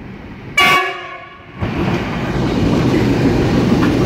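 NR class diesel-electric locomotive sounding a short, loud multi-tone horn blast about half a second in. From about a second and a half in, its engine and wheels run loudly and steadily as it passes close by at the head of a coal train.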